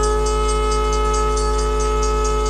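Conch shell (shankh) blown in one long, steady, horn-like note.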